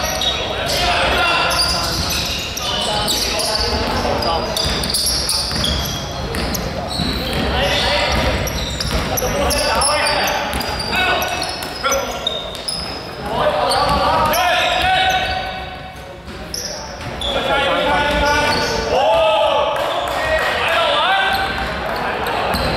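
Basketball game sounds in a large hall: a ball bouncing on the wooden court, with players' shouts and calls, all echoing.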